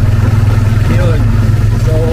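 Motorcycle engine of a Philippine tricycle running with a steady low drone, heard from inside the sidecar.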